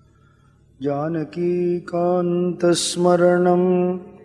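A man chanting the name Rama in long, steady held notes, starting about a second in after a short pause, with a brief hiss near three seconds in.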